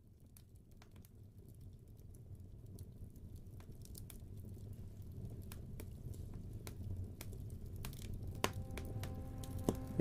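Wood fire crackling in a fireplace: scattered pops and snaps over a low rumble, fading in from silence and growing gradually louder.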